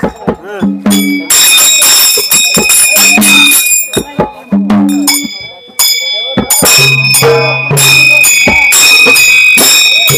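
Harmonium playing short held chords, with bright ringing metal hand cymbals and clicking percussion, as a Kannada folk drum-song (dollina pada) accompaniment starts up. The sound thins out about halfway, then a steady low harmonium note with ringing cymbals fills the last few seconds.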